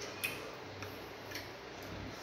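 Eating sounds of people eating by hand: a few soft, wet mouth clicks about half a second apart.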